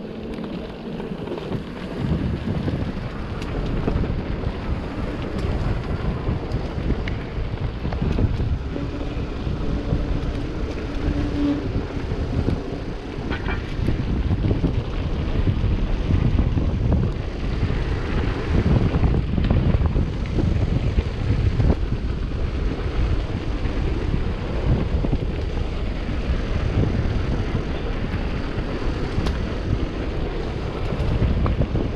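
Wind rushing over the microphone of a camera mounted on a moving mountain bike, with the low rumble of the tyres on the path and frequent short rattling knocks as the bike rolls over bumps.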